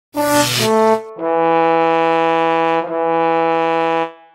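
Brass fanfare intro music: two short notes, the second higher, then a long held lower note that breaks briefly a little before three seconds and stops at the end.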